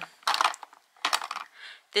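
Plastic makeup compacts clicking and clattering against each other and the drawer organiser as they are handled, in two short bursts, the first about half a second in and the second just after a second in.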